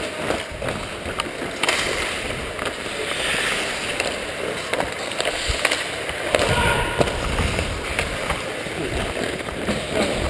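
Ice skate blades scraping and carving on rink ice, heard close up on a body-worn camera with air rushing over the microphone, and a few sharp knocks.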